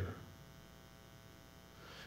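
Near silence with a faint, steady electrical mains hum, as a man's voice trails off at the very start.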